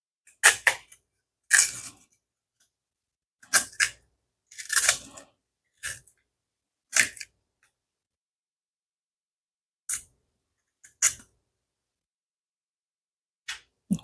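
Chef's knife cutting into and prying the thick, bark-like skin off a yuca (cassava) root: a series of short cutting and peeling sounds at irregular intervals. Most come in the first seven seconds, with a few more later on.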